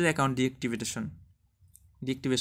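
A man talking for about the first second, then near silence with one faint short tick near the end.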